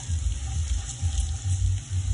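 Onions, garlic, curry powder and cumin sizzling in oil in a stainless steel pan while being stirred with a silicone spatula: the spices toasting over low heat in the first stage of a curry.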